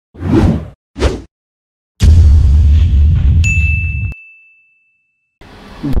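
Intro sound effect: two quick whooshes, then a heavy hit with a deep boom that fades over about two seconds. A high, clear ding comes in over the fading boom and holds for about two seconds.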